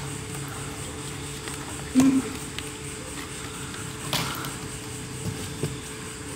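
Cardboard shipping box being cut open with scissors and its flaps handled, with two short sharp knocks from the box, about two seconds in and again about four seconds in, over a steady low hum.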